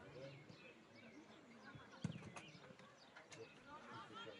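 Faint, distant shouting from players on a football pitch, with one sharp thud about halfway through.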